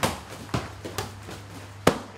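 Kickboxing strikes and blocks smacking into padding (gloves, shin guards and a trainer's body protector), about five sharp hits, the last one the loudest.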